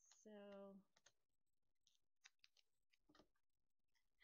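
Near silence with a few faint clicks and light rustles of a glossy vinyl sheet being handled.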